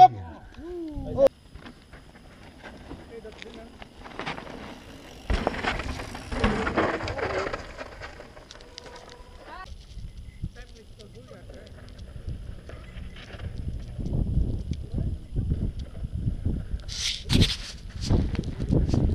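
Voices calling out from a distance, in snatches, with wind buffeting the microphone in uneven gusts during the second half.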